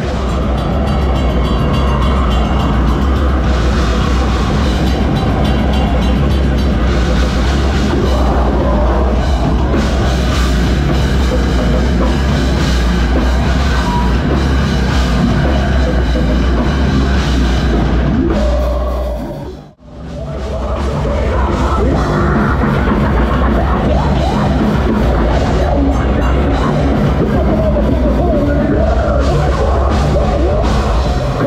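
Heavy metal band playing live and loud: distorted guitars, pounding drums and heavy bass. The music cuts out abruptly for a split second about two-thirds of the way through, then comes straight back in.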